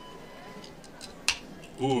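A can of beer being cracked open: a few faint clicks, then one sharp crack a little over a second in.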